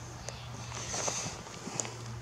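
Quiet outdoor background: a steady low hum with faint hiss and a few soft ticks, like light footsteps or handling noise.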